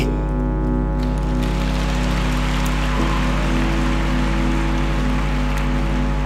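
Background music of sustained held chords that change about halfway through, over a steady hiss.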